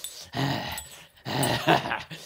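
A man growling through gritted teeth, two short snarls in a row, like an animal.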